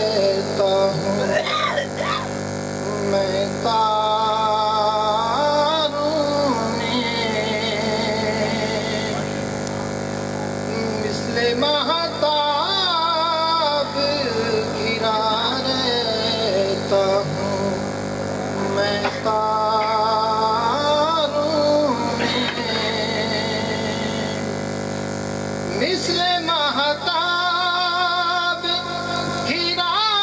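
A man's voice chanting Urdu devotional verse in a melodic, drawn-out style, in about four long phrases with held, wavering notes and short pauses between them.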